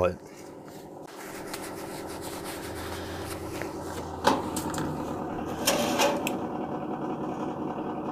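Steady hum of a toaster oven's convection fan running. About four seconds in, the oven's glass door is pulled open with a knock, followed by brief clattering of the pan or rack.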